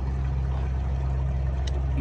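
Gasoline draining in several streams from a 1977 Lincoln Mark V's fuel tank and splashing steadily into a plastic drain bucket, over a steady low hum.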